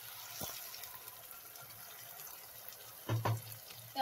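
Steady soft sizzling of onions and tomatoes frying in oil in a pan, with the ground masala paste just added. A brief louder noise comes about three seconds in.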